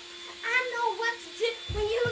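A young girl's voice singing in short phrases, with a low thump near the end.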